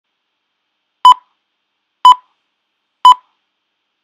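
Three short, loud electronic beeps of the same pitch, a second apart, starting about a second in.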